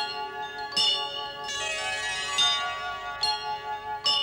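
Bell chimes struck five times, roughly in pairs, each stroke ringing on under the next.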